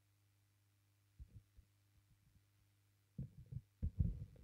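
Soft, dull thumps and knocks of a plastic set square being handled and laid down on a drawing sheet taped to a wooden desk: a couple of light bumps about a second in, then a quick cluster of louder knocks near the end, over a faint steady hum.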